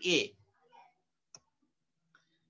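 A single sharp, brief computer mouse-button click, about a second and a half in.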